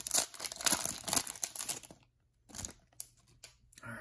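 A foil trading-card pack wrapper being torn open and crinkled by hand, crackling for about two seconds, then a few brief, quieter rustles.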